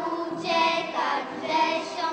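A group of young children singing together in unison, with sung notes held for about half a second each and short breaks between phrases.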